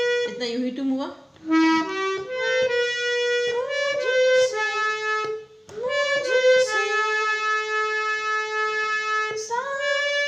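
Harmonium playing a slow melody one note at a time, reedy notes held a second or more each, with two brief breaks about a second in and about five and a half seconds in.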